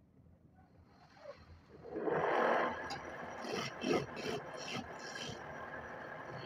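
A hand-held turning chisel cutting into a square wooden blank spinning on a lathe. A rough scraping noise starts about two seconds in, loudest at first, then carries on unevenly.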